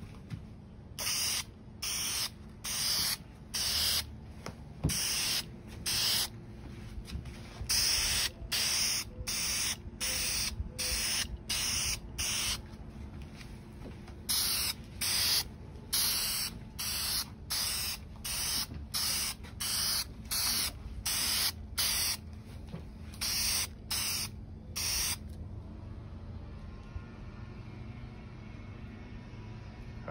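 Wood finish sprayed in short hissing bursts, about two a second, in runs broken by brief pauses; the spraying stops a few seconds before the end, leaving only a faint steady hum.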